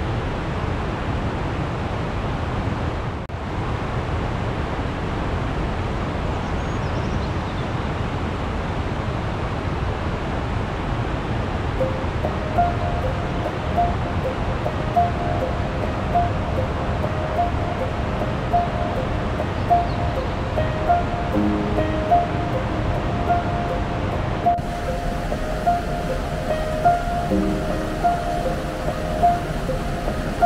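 Steady rushing of a fast mountain river over boulders. Background music with a melody of short repeated notes comes in about halfway through.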